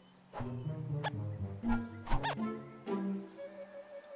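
Cartoon film score music punctuated by about five sharp struck accents, with a quick glide up and back down a little past the middle; the music thins out near the end.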